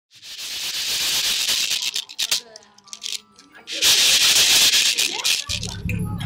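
Maracas shaken in two long bursts, a few seconds apart with some clicks between them, standing in for the sound of strong wind.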